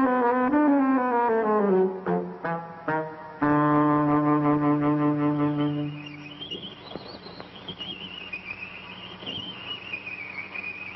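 Silent-film score music led by brass: a held chord slides downward, a few short stabs follow, and then another chord is held. About six seconds in the chords stop, and a single high wavering tone carries on quietly.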